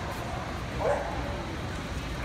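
A dog barks once, short and sharp, about a second in, over the steady murmur of a crowded hall.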